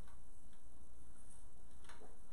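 Room tone: a steady low hum with two faint ticks, one about half a second in and one near the end.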